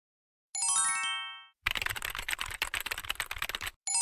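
Intro sound effects. About half a second in, a bright chime plays as a quick run of ringing notes and dies away. Then come about two seconds of rapid keyboard-typing clicks, and a second chime starts near the end.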